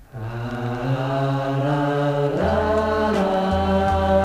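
Music from a 1971 band recording played from a vinyl LP, starting suddenly: held chords over a low bass note that steps down about two and a half seconds in.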